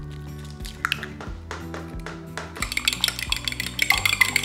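A fork whisking a raw egg in a small glass bowl: rapid clinking of metal on glass that starts a little past halfway, after a few light taps about a second in. Background music plays underneath.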